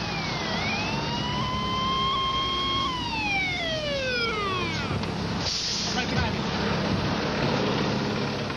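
Fire truck siren wailing up to a held pitch, then gliding down over about two seconds, over the steady drone of the truck's engine. A short hiss comes about five and a half seconds in.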